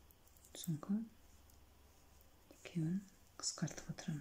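A woman's quiet, murmured voice: two short utterances under her breath, with a few faint clicks of metal knitting needles.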